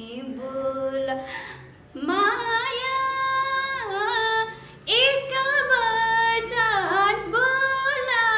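A woman singing solo, holding long notes that waver in pitch, with short breaks between phrases about two and five seconds in.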